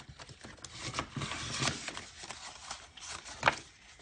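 Paper banknotes and a clear plastic cash pocket being handled: crisp rustling with a run of small taps and clicks, and one sharper click about three and a half seconds in.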